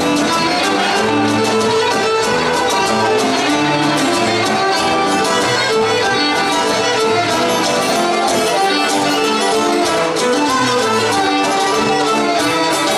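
Instrumental Cretan folk dance music: a Cretan lyra plays the melody over plucked-string accompaniment at a steady level.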